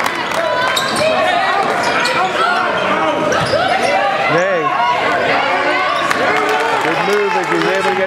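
Basketball game sound on an indoor hardwood court: a ball bouncing amid many overlapping voices of players and spectators calling out.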